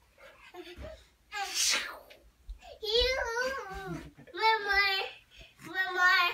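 A young child's high-pitched wordless vocalizing: three wavering calls, each up to about a second long, starting about three seconds in. A short, sharp breathy exhale comes before them.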